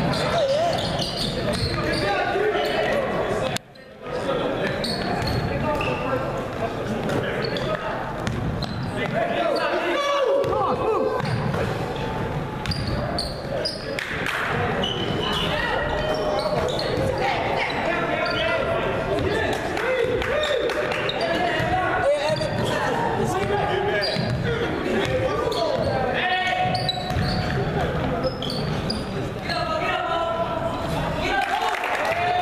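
Basketball bouncing on a hardwood gym floor during play, with voices of players and spectators calling out throughout; the sound briefly drops out about four seconds in.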